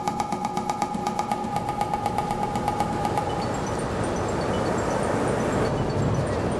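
Steady rushing noise of ocean surf washing onto a beach. Over the first half a steady tone with fast, even ticking carries on, then stops about three and a half seconds in.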